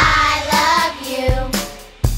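Children's nursery song: a child singing over a backing track, the sung line dying away near the end.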